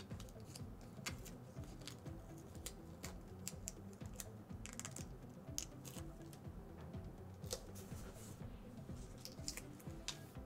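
Paper sticker backing crackling and crinkling as a sticker is peeled off and handled, with many quick sharp ticks and taps, over quiet background music.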